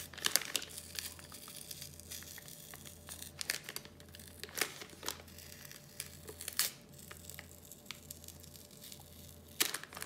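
Black plastic bag crinkling and crackling as it is unwrapped by hand and its tape seal is pulled open, with irregular sharp crackles.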